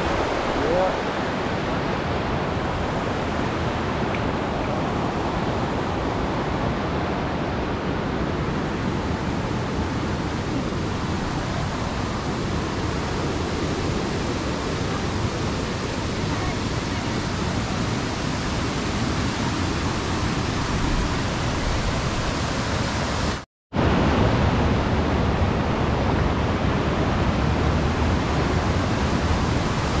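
Steady rushing of waterfall water, an even, constant noise that cuts out for a moment about twenty-three seconds in.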